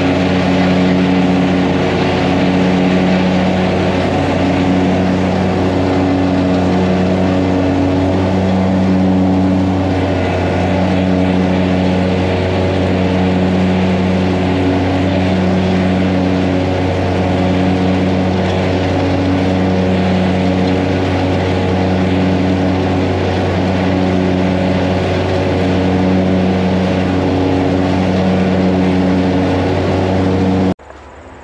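John Deere Z970R zero-turn mower running at full throttle while mowing: a loud, steady engine drone that swells and dips regularly about every two seconds.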